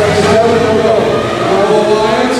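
A man's voice, an announcer talking over the arena's public address system, with arena noise beneath.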